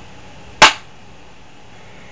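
A single loud, sharp crack about half a second in, like a slap or knock close to the microphone, with only faint background hiss around it.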